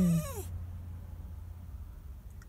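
Small dog whining in a thin, high-pitched voice, anxious and upset because its person has left it waiting. A low steady hum runs underneath.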